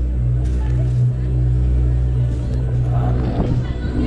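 Spinning roller coaster car rolling slowly along the track into the station, over a loud steady low hum, with rougher rattling of the car near the end.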